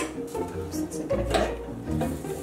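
Background music with a few short metal clinks and knocks from the deep fryer's wire basket being handled.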